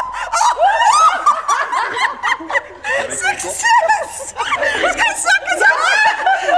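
Several women talking over one another and laughing, with high chatter and snickers close to the microphone.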